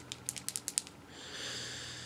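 Light clicks from makeup items being handled: a quick run of about seven in the first second, then a soft hiss.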